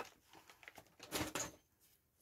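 Faint handling noise from a cardboard box and its packaging: a few light taps, then a short rustle just over a second in.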